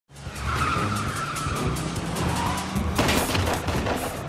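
Film car-chase soundtrack: a car engine running and tires squealing and skidding, mixed with music score, with a loud sudden hit about three seconds in.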